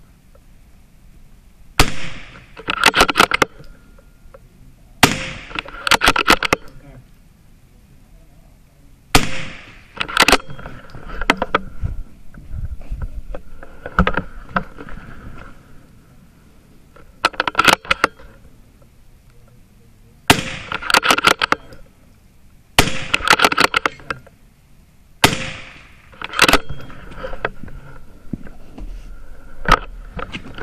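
.22 LR rifle fired about ten times, a few seconds apart, at steel targets. Each report comes with a quick run of sharp clicks.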